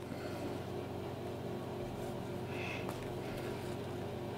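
Steady low room hum, with one faint, brief rustle a little past halfway as waxed thread is drawn through the leather of a moccasin being hand-stitched.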